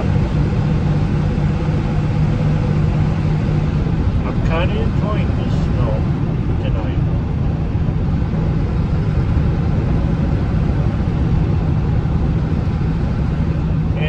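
Steady engine hum and tyre noise inside the cabin of a vehicle driving on a snow-covered road, with a faint voice briefly a few seconds in.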